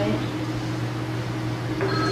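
Steady low electrical hum with background hiss on an old recording, with a voice starting near the end.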